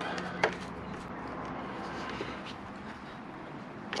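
Screwdriver tightening the pivot screw of a motorcycle clutch lever: one light click about half a second in, then only a faint steady hum.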